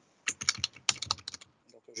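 A quick run of keystrokes on a computer keyboard, lasting about a second, as random letters are mashed out as filler text.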